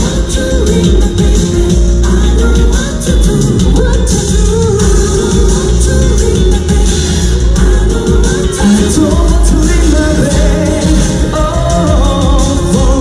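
A live pop song played loud over an outdoor concert sound system, with a male voice singing over a heavy bass-laden backing, heard from within the audience.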